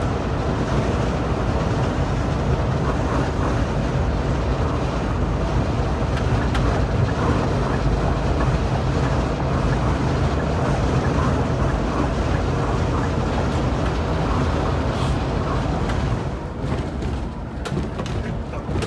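Steady low rumble of a rear-engined Scania K360iB coach cruising at highway speed, heard from the front of the cabin, its engine drone mixed with tyre and road noise. The level eases slightly near the end.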